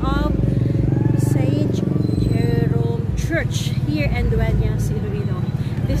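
A motorcycle engine idling close by, a steady low drone that dips briefly a couple of seconds in, with bits of people's voices over it.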